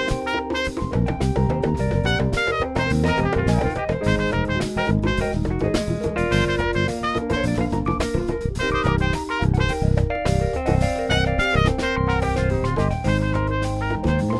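A live instrumental band playing: trumpet over electric bass, keyboard, drum kit and hand percussion, with a busy, driving drum part.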